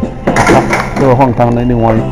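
Saxophone playing a melody with bending, sliding notes.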